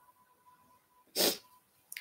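A woman sniffs once, a short noisy breath in through the nose a little past a second in, while wiping her eyes and nose as if tearful.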